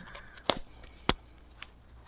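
Two sharp clicks a little over half a second apart, then a fainter one, from a motorcycle helmet's chin strap and its metal D-rings being worked under the chin.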